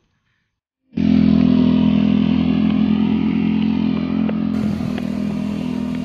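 A loud, steady motor drone with a low hum, starting suddenly about a second in after a moment of silence and holding an even pitch.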